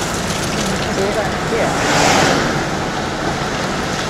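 Car driving on a snow-covered road, heard from inside the cabin: steady road and engine noise that swells about halfway through.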